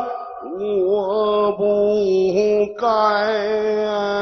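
A man singing a Peking opera aria into a microphone, holding long notes with a wavering pitch; a louder new phrase begins about three seconds in.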